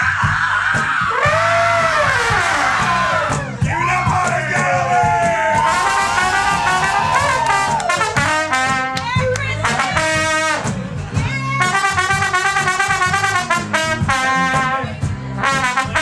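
Live acoustic band playing an instrumental break over strummed acoustic guitars. A horn-like lead melody swoops and bends in long arcs through the first half, then turns to quick, repeated choppy phrases.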